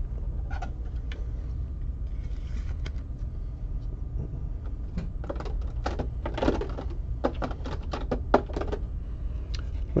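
Trading cards being handled on a table: scattered light clicks and taps, most of them in the second half, over a steady low hum.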